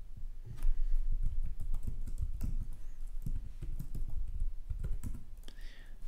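Typing on a computer keyboard: a run of quick, irregular keystrokes.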